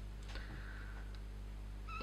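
Felt-tip marker squeaking faintly against paper for about a second as it is drawn across the sheet, over a steady low hum.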